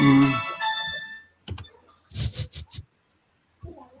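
A melodic phone ringtone playing a run of electronic notes, dying away about a second in, followed by a few faint clicks and a short rustle.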